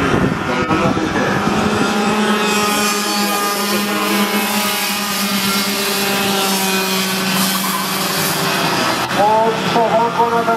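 Several Yamaha cadet-class racing karts with small two-stroke engines running together at a steady, nearly unchanging pitch.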